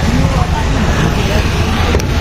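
Busy street noise: a steady rumble of passing traffic with faint voices of people nearby.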